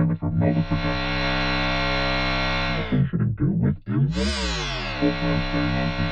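Buzzy, sustained synthesizer chord from the vocoder's carrier track, with a few choppy notes at the start and a swooping pitch sweep about four seconds in before the chord settles again.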